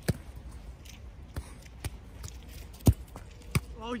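Five sharp thuds of a football being struck and saved, with the goalkeeper diving onto grass. The loudest comes about three seconds in.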